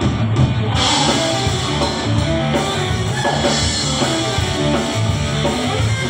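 Live rock band playing an instrumental passage: drum kit and electric guitar, with no vocals.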